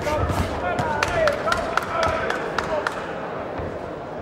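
Voices shouting around a boxing ring, with a quick, irregular run of about eight sharp slaps or knocks between one and three seconds in.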